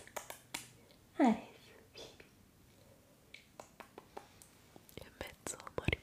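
Close-miked whispering into an ASMR microphone, with a short voiced sound about a second in, followed by a scatter of small clicks and taps close to the microphone.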